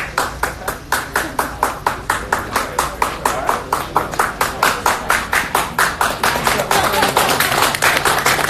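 A crowd clapping in unison in a steady rhythm of about four claps a second, with voices growing under it near the end.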